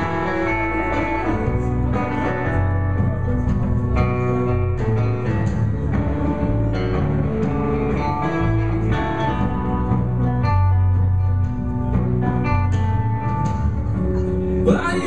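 Live band playing an instrumental passage without vocals: guitars picked and strummed over sustained low bass notes, at a steady level.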